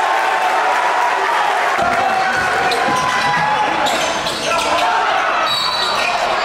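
Crowd voices and shouting in a school gym, with a basketball bouncing on the hardwood court and short sharp knocks throughout.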